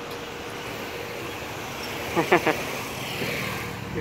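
Steady road and traffic noise from riding along on the back of a moving Zongshen cargo motor tricycle, with a faint steady hum underneath. A short voice call comes about two seconds in.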